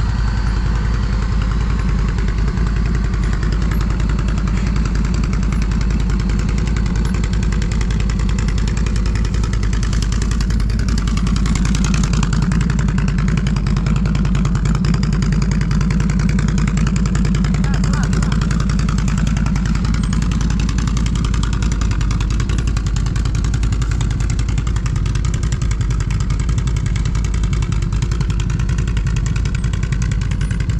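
A Can-Am Renegade ATV's V-twin engine running at low revs as the quad crawls at walking pace. It is steady, with revs rising slightly in the middle.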